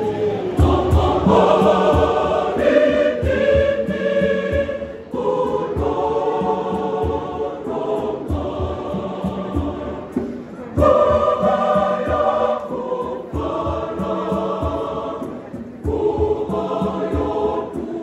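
Large mixed choir singing a Shona sacred piece in part harmony, in held phrases of a few seconds with short breaks between them.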